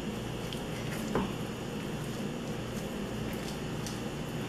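A spatula stirring soft mashed cassava dough in a stainless steel bowl: quiet squishing and light scraping over a steady background hiss, with one slightly louder sound about a second in.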